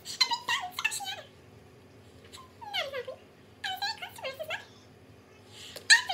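A woman's very high, squeaky vocal calls in four short bursts, several gliding downward in pitch: a voice-actor's impression of a cartoon dolphin.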